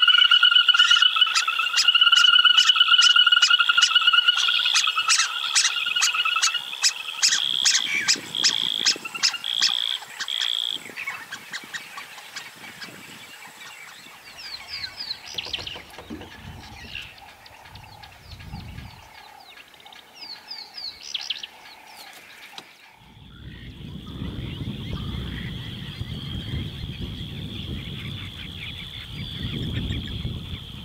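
A chorus of frogs calling: a loud pulsing, warbling trill with rapid clicking that fades out about a third of the way in, followed by scattered chirps. About two-thirds of the way in it changes abruptly to a low rumbling noise under a steady high tone.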